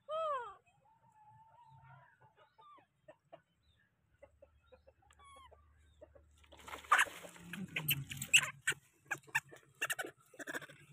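Animal calls: a short, loud falling cry right at the start, then faint scattered chirps. From about two-thirds of the way in comes a loud flurry of squawks and scuffling noises.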